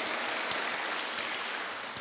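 Audience applause from a seated crowd, dying away steadily.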